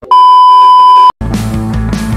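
Loud, steady test-tone beep of the kind played with TV colour bars, lasting about a second and cutting off suddenly. Music begins just after it.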